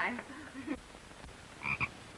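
A frog croaking: two short croaks in quick succession, about one and a half seconds in.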